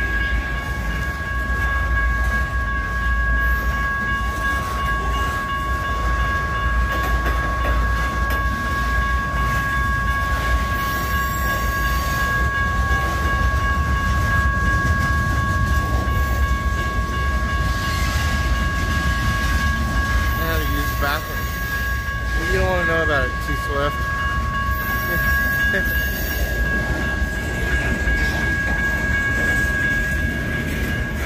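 Freight train cars, boxcars and lumber-laden centerbeam flatcars, rolling steadily through a grade crossing with a continuous low rumble. Steady high ringing tones from the crossing's warning bell sound over it, one of them stopping near the end.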